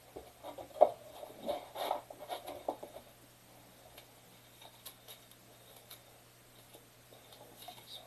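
Light handling noises of trading cards and packaging being moved about on a wooden table: a quick run of small clicks and rustles with one sharp tap about a second in, then only a few faint ticks.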